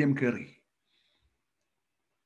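A man's speaking voice ends a phrase in the first half second, then near silence, broken by a couple of tiny faint clicks about a second in.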